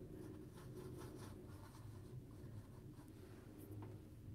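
Faint scratching of a paintbrush working acrylic paint on a paper-plate palette, in a run of short soft strokes in the first second and a half and another just before the end, over a low steady hum.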